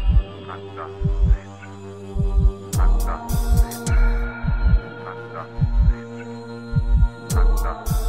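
Darkwave/gothic rock instrumental passage: deep drum thumps, often in pairs, over a sustained droning synth chord, with short cymbal hits at a few points and no singing.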